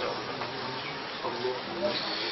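A pause in Quran recitation: a steady background hiss with faint voices about halfway through.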